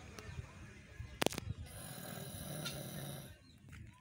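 A man snoring while dozing upright in a chair, one long low snore about two to three seconds in, over outdoor background noise. A sharp click about a second in is the loudest moment.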